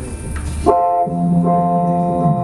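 Live ambient band music: a low drone gives way abruptly, about two-thirds of a second in, to a held chord of steady, horn-like tones, and a lower sustained note joins it about a second in.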